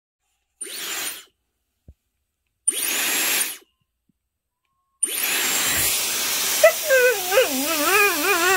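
Dyson hair dryer blowing in two short bursts, then running steadily from about five seconds in. Over it a border collie starts a wavering, up-and-down howling grumble, protesting against the dryer noise it hates.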